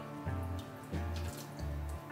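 Water dripping and trickling off a soaked mass of hydroponic tomato roots as it is lifted out of its reservoir, over background music with a steady repeating bass beat.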